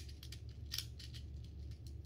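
Plastic infinity cube fidget toy being flipped quickly in the hands, its hinged blocks clacking together in a string of short, irregular clicks.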